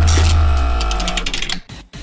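Transition sound effect between news items: a deep boom with ringing tones and quick ticks over it, fading out about a second and a half in.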